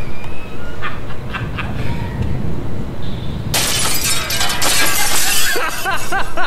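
Glass shattering: a sudden crash about three and a half seconds in, with pieces clattering for about two seconds. A voice follows near the end with short repeated cries.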